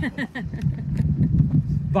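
A vehicle engine running, a steady low hum, with a few broken words of speech over it at the start.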